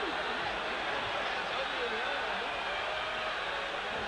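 Steady crowd noise from a large football stadium crowd, with faint voices in it.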